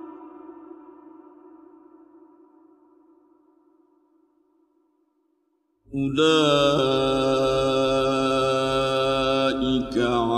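A man's melodic Quran recitation: a long held note fading slowly away over about five seconds, a moment of silence, then the reciter starts the next verse loudly about six seconds in, with a drawn-out, ornamented line.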